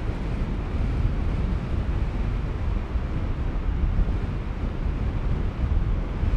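Strong 25-knot wind buffeting the microphone: a steady low rush with no other clear sound.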